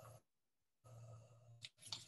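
Near silence, with a faint sigh or breath from the speaker about a second in, followed by a few faint clicks near the end.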